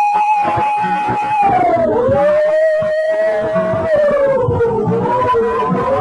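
Gospel church music: a long, held melody line that wavers and slides slowly downward about two seconds in, over low, steady accompaniment.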